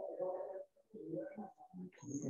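Faint, indistinct talking: quiet voices in the room that cannot be made out.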